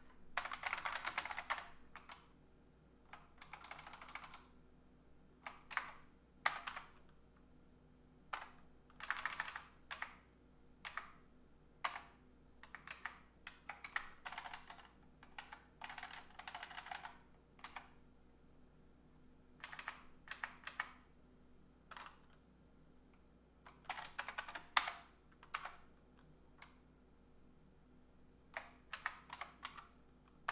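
Typing on a computer keyboard in irregular bursts of rapid keystrokes, with short pauses between them.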